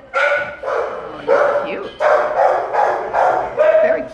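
Dog barking repeatedly, about five drawn-out barks in quick succession.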